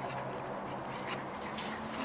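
A small kitchen knife scraping the dirt and skin off a fresh porcini (king bolete) stem in a few short scratchy strokes, over a low steady hum.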